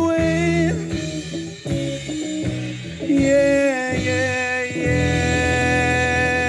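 Live rock band of electric guitars, bass guitar and drum kit playing, with drum hits in the first half, then settling into a long held chord from about three seconds in.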